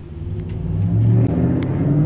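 A low rumble with a faint hum in it, growing steadily louder over the two seconds.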